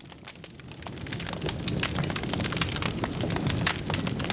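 Rain falling in a dense, steady patter of drops, building up over the first second and a half.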